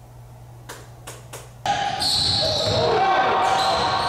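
A few soft knocks, then an indoor basketball game starts abruptly about one and a half seconds in: ball bouncing on a hardwood court and echoing voices in a large gym.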